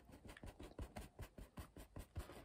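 Faint, quick, irregular taps and scratches of a paintbrush dabbing oil paint onto canvas.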